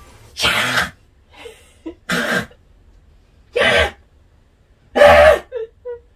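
Four short, loud vocal bursts from a person, about one and a half seconds apart, the last the loudest, sounding like sneezes or coughs let out at close range.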